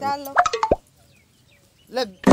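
A short stretch of speech that ends in a single sharp click about three quarters of a second in.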